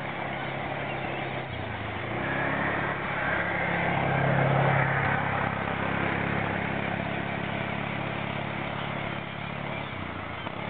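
An engine running, with a steady low hum that grows louder to a peak about four to five seconds in and then eases off.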